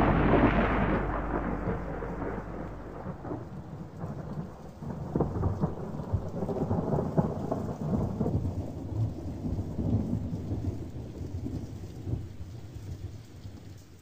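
Thunder rolling over steady rain. The rumble is loudest at the start and dies away over the first few seconds, further rolls and cracks come between about five and eleven seconds in, and then the storm fades out near the end.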